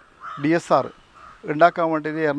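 A crow cawing in the background beneath a man's speech.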